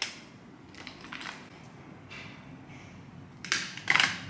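Small hard makeup containers being handled, with faint taps and then two sharp plastic clicks and a clatter near the end.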